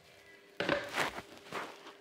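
Three footsteps on a tile floor, about half a second apart, starting about half a second in, over a faint steady hum.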